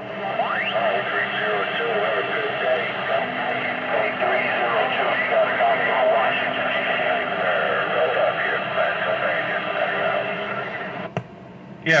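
Stryker SR-955HP radio receiving skip through its speaker: distant stations' voices, thin and garbled, overlapping in static, with a rising whistle near the start. Among them is a station calling for 302 that is too weak to make out. The signal cuts off with a click about eleven seconds in.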